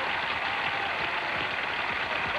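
Studio audience and contestants applauding, a steady clatter of many hands clapping.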